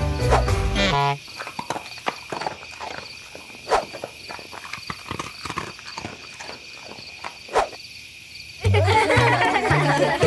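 Sound effects of a hedgehog eating from a food bowl: a run of small crunching clicks and sniffs, two of them louder, over a steady high insect-like chirring. Cartoon music plays briefly at the start and comes back near the end.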